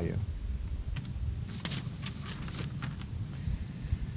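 Scattered light clicks from a computer keyboard and mouse, one about a second in and a cluster a little later, over a low steady room hum.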